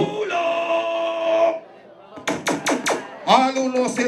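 Recorded party music with a held sung note that cuts off about a second and a half in. After a brief lull come four quick sharp hits, then a voice starts near the end.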